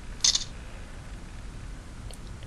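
BlackBerry 9500 phone playing its camera shutter sound as it takes a picture: one short, bright click about a quarter second in.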